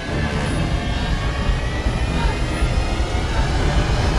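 A deep, loud rumble with a dense hiss above it, building slightly in loudness, from a space film's soundtrack.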